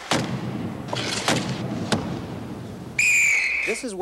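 Ice hockey game sound: steady arena noise with a few sharp knocks of players slamming into the boards. About three seconds in, a referee's whistle blows one steady, loud blast of almost a second.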